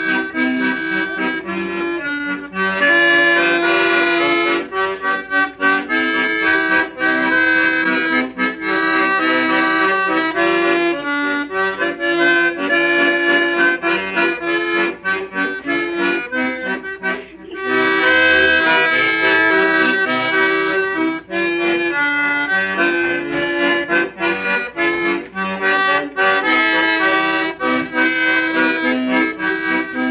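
Accordion music played back from a decades-old home reel-to-reel recording on a TEAC A-4300 tape deck, with steady held chords and a short break a little past halfway.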